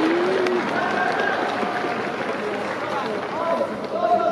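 Players' shouts and calls on a soccer pitch over a steady wash of stadium crowd noise, with one sharp knock about half a second in.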